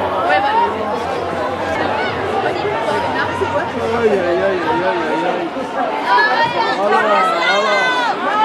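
Match-side sound of a women's football game: several voices calling and shouting at once, many of them high, over steady background chatter from the pitch and the stands.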